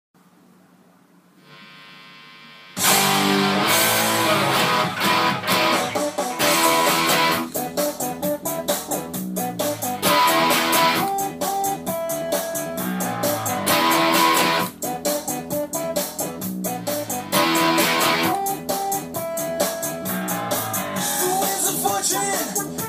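Electric guitar played along with a full-band pop-punk recording, with drums and a steady beat. After a faint, sustained tone, the music starts suddenly about three seconds in.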